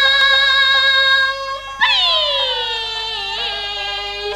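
Qinqiang opera music: a high, held melodic note. About two seconds in, a new note enters and slides slowly down in pitch, settling on a lower held note with a slight waver.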